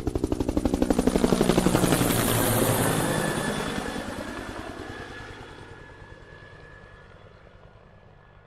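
Helicopter rotor chopping in a fast, even beat. It swells over the first couple of seconds, then fades away slowly as its pitch falls, like a fly-past.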